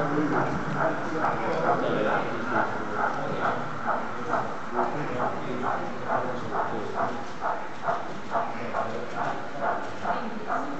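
Model steam tank locomotive running along the layout, its sound a steady rhythmic beat of about three a second, over the hubbub of a crowded hall.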